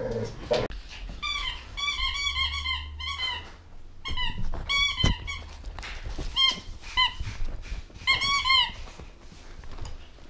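A dog chewing a squeaky toy: rapid runs of short, high-pitched squeaks in four bursts, with a single thump about halfway through.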